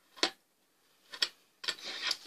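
Two short, sharp plastic clicks about a second apart from a plastic pom-pom maker handled while yarn is knotted onto it.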